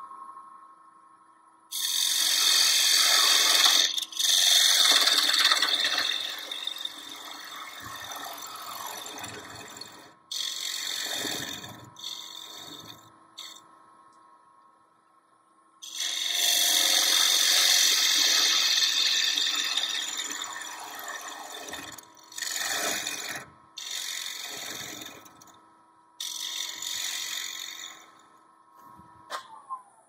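Wood lathe running with a steady motor whine while a hand-held turning tool cuts into the spinning box lid in repeated passes, each pass a loud hiss of shavings lasting one to five seconds. The motor's whine falls away just before the end as the lathe winds down.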